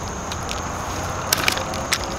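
A Joovy Scooter X2 double stroller's metal frame unfolding as it is lifted by the handle, with a few sharp clicks in the second half as it locks open.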